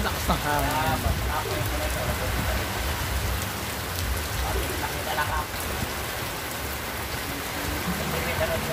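Steady rain falling, with scattered drips from a roof edge.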